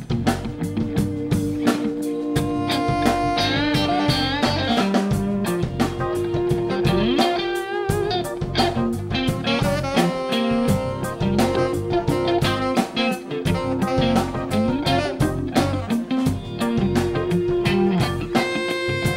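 Live rock band playing an instrumental passage of a neo-reggae tune: electric guitar to the fore over a steady drum beat.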